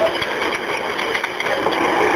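Steady background noise on a recorded 911 phone call, a line hiss carrying a faint murmur of voices.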